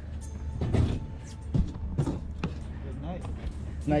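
Steady low hum of a boat's outboard motor running at trolling speed, with several sharp knocks from handling gear on the boat.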